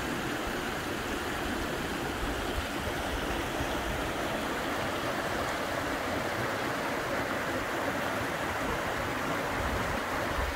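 Small rocky creek running and splashing over little cascades, a steady rushing water sound.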